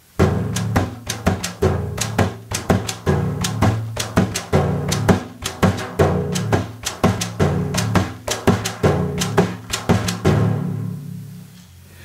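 Meinl Wave Drum, a frame drum played on the lap, in a Malfuf rhythm: deep thumb-struck 'dum' bass notes, sharp 'pa' slaps and light 'chick' taps of the hand against the shell, in quick repeating strokes. The playing stops about ten seconds in and the last note rings away.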